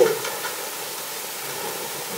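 Steady background hiss of room tone with no other events, after the tail of a spoken word at the very start.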